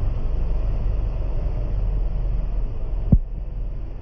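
Steady low outdoor rumble with one sharp knock about three seconds in.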